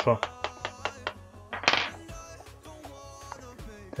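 Background music, with a quick run of light plastic clicks and knocks in the first second or so as a wheel is worked off the axle of a 1/18 scale RC crawler, then a short hiss near the middle.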